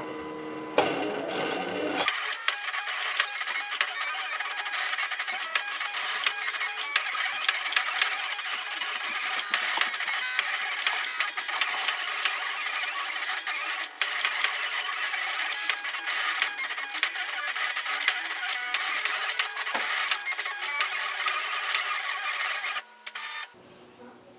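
Silhouette Cameo cutting machine drawing with a sketch pen: a steady mechanical whir with dense rapid clicking as the tool carriage and rollers move the pen over the cardstock. It starts about two seconds in and stops just before the end.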